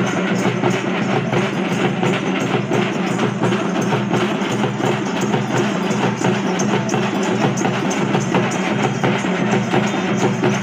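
Folk drums, a large frame drum and a barrel drum, beaten by hand and stick in a fast, steady rhythm.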